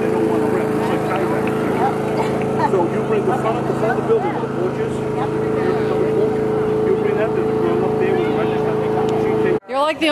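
A small engine running steadily at an even speed, with background voices over it; the sound cuts off sharply near the end.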